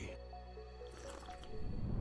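Quiet background music with a few short, soft plinking notes in the first second.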